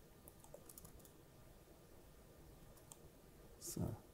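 Faint, scattered clicks of a laptop's keys being pressed, a few in the first second and more around three seconds in.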